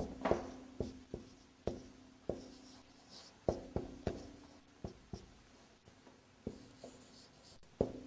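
Marker writing on a whiteboard: a run of short, irregular taps and strokes, roughly two a second.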